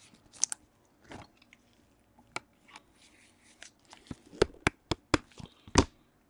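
Trading cards and clear plastic sleeves handled by gloved hands: a scatter of sharp clicks and crinkles that come quicker in the last two seconds.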